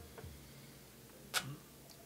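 A man drinking from a small cup in a quiet room: a faint click near the start and one sharp click a little past halfway.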